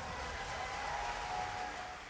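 Audience applauding, an even patter of clapping, with a few thin held tones over it.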